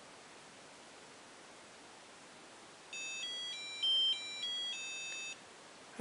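CMIzapper Medusa ROM programmer playing a short electronic beeper melody about three seconds in, roughly seven quick stepped notes over two and a half seconds, the loudest in the middle and the last held longest. It signals that the copy of the MacBook's ROM has finished successfully.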